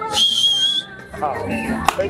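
One shrill, steady whistle blast lasting under a second, followed by voices.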